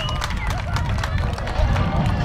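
Excited shouting and cheering from several voices at once as the soccer team celebrates, over a steady low rumble.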